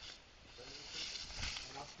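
Footsteps rustling through dry fallen leaves, a steady soft crunching that grows about half a second in.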